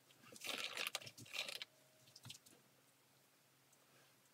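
A brief rustling, crunching handling noise lasting about a second and a half, followed by a shorter, fainter rustle about two seconds in.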